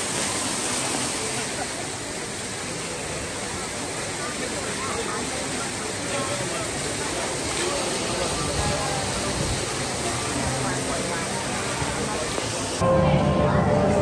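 Steady rush of an artificial waterfall splashing into a rock pool, with crowd voices in the background. About a second before the end it cuts abruptly to music.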